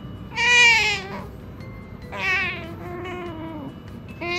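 An Asian small-clawed otter whines twice while being stroked: a short, loud, high call about half a second in, then a longer one from about two seconds in that slides down in pitch. These are clingy, attention-seeking calls.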